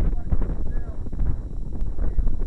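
Wind buffeting the camera's microphone, a heavy low rumble with irregular knocks and rustles from the camera being carried, and faint indistinct voices.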